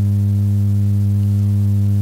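A loud, steady low-pitched electronic hum with a stack of overtones above it, unchanging in pitch and level.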